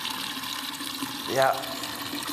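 Steady rush of running liquid, as of liquid being filled into a still's kettle or water running from a hose, with one short spoken word about a second and a half in.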